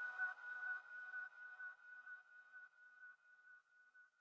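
The end of an electronic dance track fading out: a single held high synth note, pulsing quickly, with a few fainter notes beneath it, dying away.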